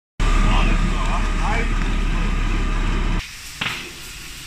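A fire engine's engine running hard with its pump, a loud steady rumble with a thin high whine, and voices over it. About three seconds in it cuts to a quieter scene with one short burst of noise.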